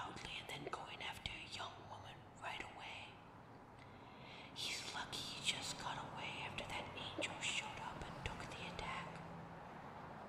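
Soft whispering throughout, in short breathy phrases with no words clear enough to make out.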